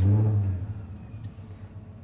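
Ford Coyote 5.0 DOHC V8 firing up: it catches with a brief rev flare that falls back within about a second to a steady idle.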